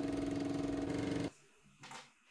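Film projector running: a fast, even mechanical clatter over a steady motor hum, which cuts off suddenly about a second and a quarter in. A faint click follows near the end.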